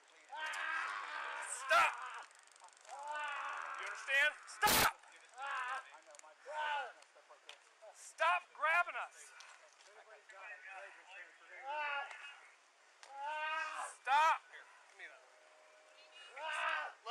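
A man crying out and groaning in distress again and again during a struggle on the ground, with short, high-pitched wordless yells. A sharp knock about two seconds in and a louder one about five seconds in.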